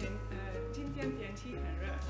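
Background music: low sustained bass notes that change pitch about one and a half seconds in, with lighter plucked-string notes above.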